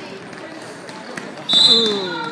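Basketball game sound in a gym: a ball bouncing and players moving on the court under low crowd noise. About a second and a half in comes a short, high, steady squeal, with a spectator's falling cry of surprise.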